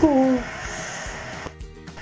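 A drawn-out vocal cry with falling pitch ends in the first half second. Quiet background music follows.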